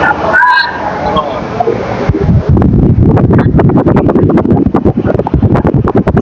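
Busy market background noise. From about two seconds in, rapid irregular crackling and knocking close to the microphone is the loudest sound.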